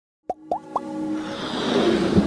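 Sound effects of an animated logo intro: three quick plops, each sliding up in pitch, about a quarter second apart. Then a whoosh swells louder over held musical tones.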